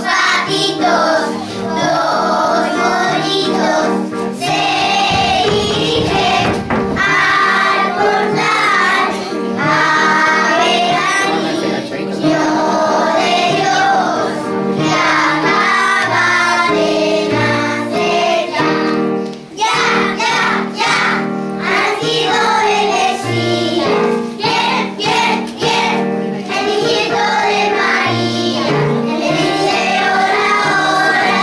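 A group of young children singing together over instrumental accompaniment.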